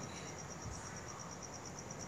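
Faint, high-pitched chirping of an insect in the background: a steady, even pulse of about ten chirps a second.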